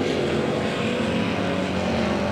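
Figure-8 race cars' engines running at speed around the track, a steady mix of several engines heard from the grandstand.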